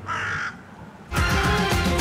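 A crow caws once at the start. About a second in, a short musical ident comes in, full and loud.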